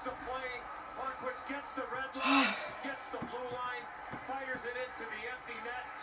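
Television broadcast of an ice hockey game heard in the room: a play-by-play commentator talking steadily, with a short rush of noise a little over two seconds in.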